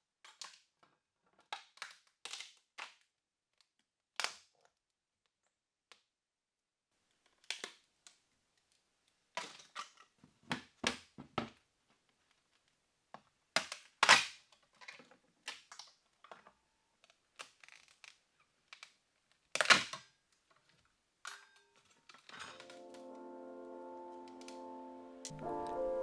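Sharp snaps and knocks, scattered and irregular, as a knife tapped with a rubber mallet pries cast epoxy-and-wood koi pieces off their backing board, the glued joints popping loose; the loudest cracks come about halfway through and again a few seconds later. Near the end, soft background music with held notes fades in.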